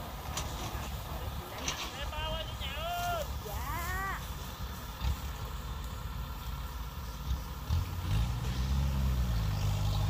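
Kubota rice combine harvester's diesel engine running with a steady low rumble. About eight seconds in, it speeds up and grows louder.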